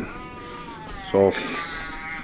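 A high-pitched, drawn-out whining cry that slides slightly down in pitch, heard twice, with a short breathy burst between.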